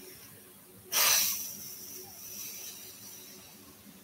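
A person's sharp exhale, a sudden puff of breath into the microphone about a second in that trails off over the next two seconds.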